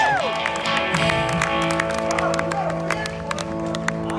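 Live band holding a sustained chord under the stage talk, one note pulsing on and off, with scattered sharp taps through it.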